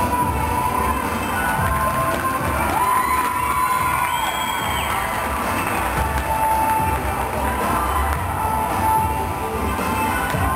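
Crowd cheering with children's high-pitched shouts and whoops over program music playing through the rink's sound system.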